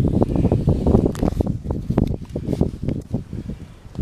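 Handling noise and rustling close to the microphone: irregular crackles and thumps as a handheld camera is moved and turned around against the fabric of a camouflage hunting blind, easing off a little near the end.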